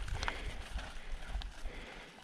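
Gravel bike rolling down a dirt singletrack: a steady low rumble from the tyres and ride, with a couple of sharp clicks and rattles as the bike goes over bumps.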